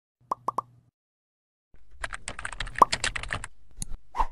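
Intro sound effects: three quick pops, then a rapid run of computer-keyboard typing clicks lasting about a second and a half, ending with a couple of sharper clicks.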